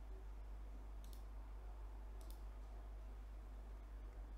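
Two faint clicks, about a second in and again just past two seconds, from the laptop being clicked through the screen-sharing menu, over a steady low hum.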